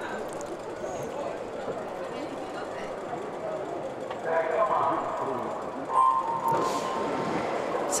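Electronic swim-start beep: a single steady tone about six seconds in, followed by a rush of splashing as the relay swimmers dive in, over continuous crowd chatter around the pool.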